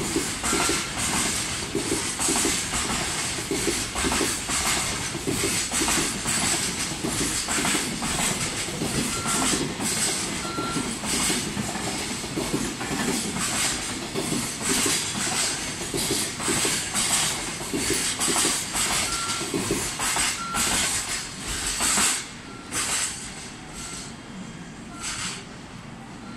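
Freight train of loaded and empty container flat wagons passing at speed, its wheels clattering in repeated beats over the rail joints above a steady rolling rumble. The sound drops off sharply near the end as the last wagon goes by.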